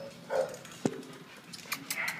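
Dog in a kennel giving a short vocal sound about a third of a second in, followed by a single sharp knock just before the middle.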